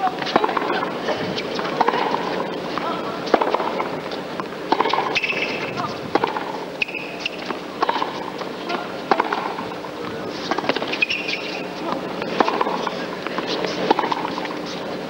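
Tennis racquets striking the ball back and forth in a rally, sharp pops about once a second, over the steady hum of an arena crowd.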